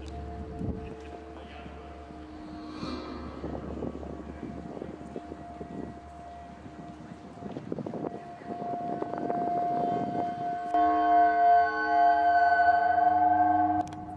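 Background music of steady, sustained droning tones, swelling louder into a fuller held chord about eleven seconds in.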